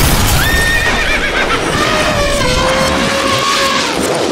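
Loud, heavily distorted horse whinny sound effect: one long, wavering cry that falls in pitch, over a harsh wall of noise.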